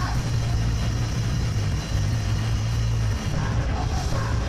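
Live heavy rock band playing loudly through a club PA: distorted electric guitars and bass holding a heavy low drone that breaks off about three seconds in.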